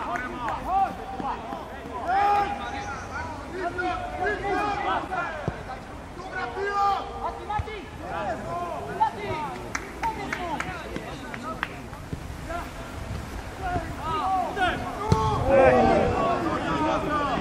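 Footballers' voices shouting and calling to each other on the pitch during play, short unintelligible calls throughout, with a few sharp knocks mixed in.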